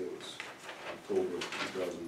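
Low, indistinct murmured speech: a few short mumbled syllables.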